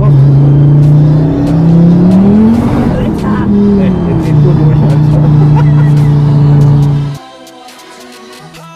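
The Ford Focus RS 500's rebuilt 2.5-litre turbocharged five-cylinder, heard from inside the cabin, running loud at steady revs. The revs climb about two seconds in, fall back by about four seconds and hold steady again. The sound cuts off suddenly near the end.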